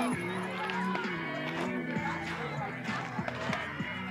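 Softball players and spectators calling and shouting, with a loud rising shout right at the start. Under the voices runs a steady pitched sound that shifts in steps, like music.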